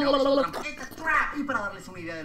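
Speech only: a voice talking quickly, with no other sound standing out.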